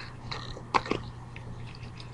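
Light handling noises of a wallet and coins being taken out on a cloth-covered table, with one short sharp sound about three-quarters of a second in, over a steady low hum.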